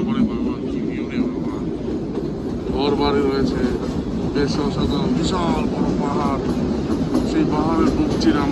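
Kalka–Shimla narrow-gauge toy train running, a steady rumble and rattle heard from beside an open coach window, with people's voices talking over it now and then.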